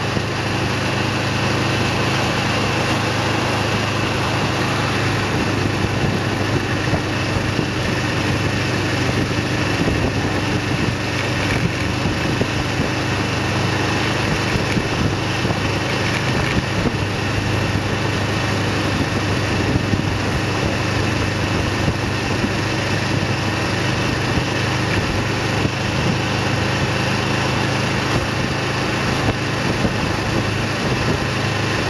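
Kawasaki EN 500's parallel-twin engine running steadily while cruising in fifth gear, under a constant rush of wind and road noise.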